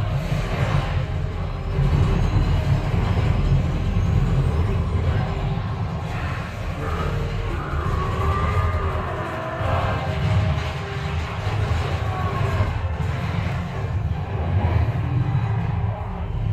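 Action film soundtrack playing over room speakers: music with a strong, continuous deep rumble of effects, and some swooping tones about halfway through.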